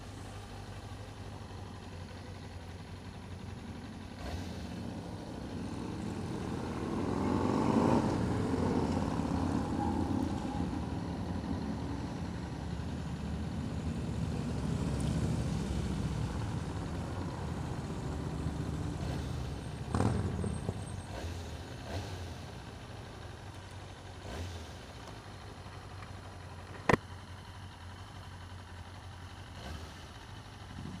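Motorcycle engine idling steadily at a stop while other motorcycles and cars pass close by. The passing traffic swells and is loudest about a quarter of the way in. There is a brief knock past the middle and a single sharp click near the end.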